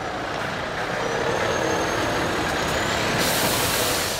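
A heavy articulated lorry passing close by, its engine and tyres a steady loud noise. A sharp hiss of air from the lorry's air brakes comes near the end.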